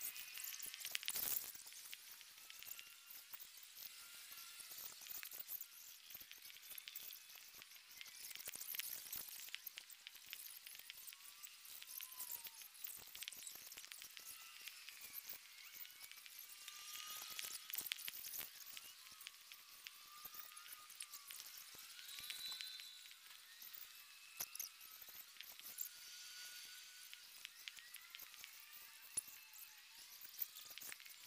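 Faint outdoor ambience of a football pitch with no commentary: a thin high hiss with scattered small clicks and repeated short high chirps.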